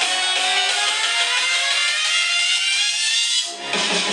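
Music playing from a Boult Crystal portable Bluetooth speaker: the track builds with a sweep rising in pitch over about three seconds. It breaks off briefly just before the end, then comes back in fuller.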